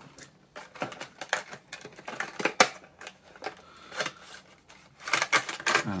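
A cardboard model-kit box being opened and its clear plastic packaging handled: irregular clicks, crackles and rustles, with one sharper click about two and a half seconds in and a busier patch of crinkling near the end.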